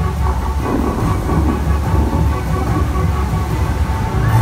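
A musical water fountain during its show: music with held notes over the steady rumble and rush of the fountain's water jets.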